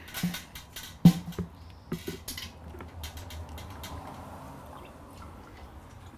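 Knocks and clicks as a plastic pitcher and the valve of a stainless brew kettle are handled, the loudest a sharp knock about a second in. Then a faint, steady run of wort from the kettle valve into the pitcher: the first cloudy runnings being drawn off until the wort runs clear.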